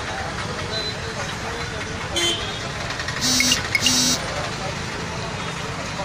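Street traffic and crowd chatter, with a brief toot about two seconds in and then two short vehicle horn honks a second later.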